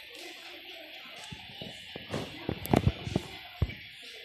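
A hard platform sandal knocked and set down on a tabletop while being handled: a cluster of sharp taps and knocks in the second half, over steady background music.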